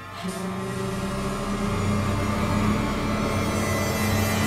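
Ominous horror film score: low sustained drones with higher held tones and a hiss over them, swelling in the first second.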